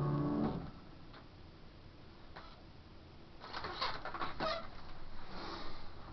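A piano's final chord rings and is released about half a second in. After a quiet pause come scattered clicks, creaks and rustling as the player gets up from the piano and moves close to the microphone.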